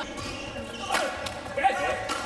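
Badminton rackets striking a shuttlecock in a fast doubles rally: two sharp cracks, about a second in and again just before the end, the second the louder.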